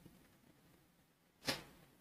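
Near silence: quiet room tone, broken once about a second and a half in by a brief soft sound.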